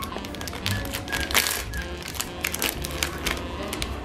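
Foil blind-bag packet crinkling and tearing open in the hands: a quick run of sharp crackles, with a louder rip about a second and a half in. Soft background music plays underneath.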